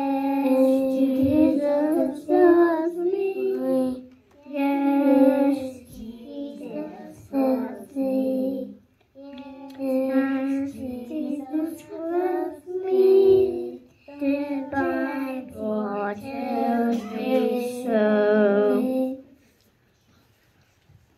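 Young children singing a song together, in phrases with short breaths between; the song ends about a second before the end.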